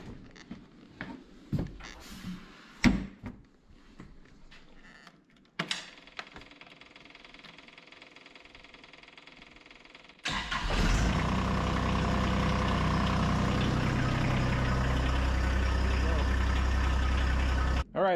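A few handling clicks and knocks, then a faint steady hum from about five seconds in as the ignition is switched on. About ten seconds in, the John Deere 1025R's three-cylinder Yanmar diesel cranks and catches at once, then runs at a steady idle. It starts on the newly fitted battery, so the battery was what had left it only clicking.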